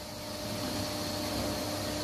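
Steady workshop background hum and hiss with a faint steady tone, growing slightly louder after the first half second.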